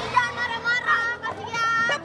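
High-pitched women's voices shrieking and shouting over one another during a scuffle, ending in a longer shrill cry near the end.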